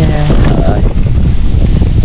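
Wind buffeting the microphone: a loud, steady low rumble, with a brief word of speech at the very start.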